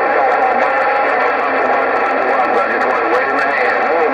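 Distant stations' voices received over the President HR2510 radio's speaker, garbled and unintelligible, mixed with steady static and crackle in a thin, narrow-band sound.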